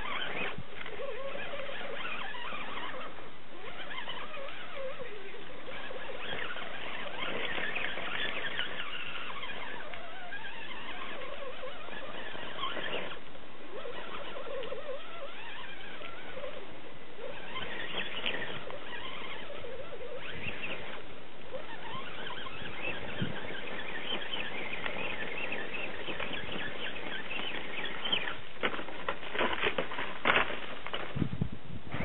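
Electric motor and gear drive of a 1:10 scale Axial AX10 rock crawler whining as it crawls, the pitch wavering up and down with the throttle, over tyres scrabbling on bark and loose rock. A few sharp knocks near the end.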